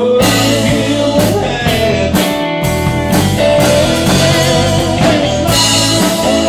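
Live blues-rock band playing a song: drum kit, bass, electric guitar and keyboards together at a steady loud level.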